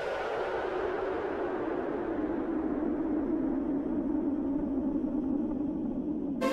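A hissing synthesizer noise wash in electronic outro music. It slowly sinks in pitch over a few seconds, then holds steady, with no melody or beat.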